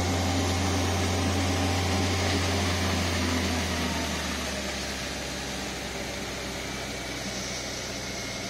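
A fire engine's pump engine running with a steady low hum, under the broad hiss of a hose jet spraying water. The hum drops in level about four seconds in.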